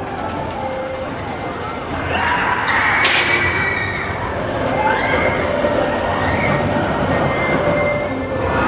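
A Schwarzkopf steel roller coaster train rolling along its track, growing louder about two seconds in, with riders shouting and screaming over the rumble. A sharp clack is heard about three seconds in.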